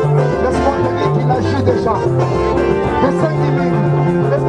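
Band music with electric guitar playing plucked lines over a bass line that steps from note to note about every half second.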